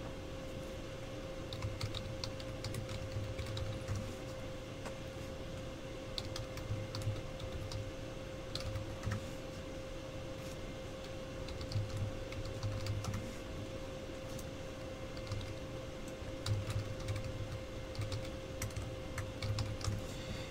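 Typing on a computer keyboard: light key clicks in irregular spurts with short pauses between them. A faint steady hum runs underneath.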